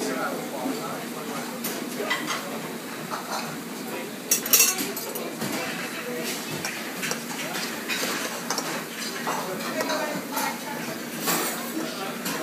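Metal spoon scraping and clinking against a stainless steel bowl while scooping liquid-nitrogen-frozen brandy sorbet, with repeated sharp knocks and a loud clatter about four and a half seconds in.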